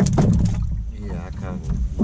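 Knocks and a steady low rumble from a small metal jon boat rocking on the water, loudest with a cluster of knocks at the start, and an indistinct voice in the middle.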